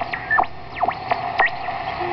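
Homebuilt WBR regenerative shortwave receiver being tuned by hand. Whistles sweep down in pitch and back up about four times over a steady hiss as the tuning passes station carriers.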